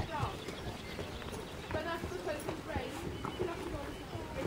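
Hoofbeats of a horse cantering on a soft arena surface, mixed with indistinct chatter from onlookers.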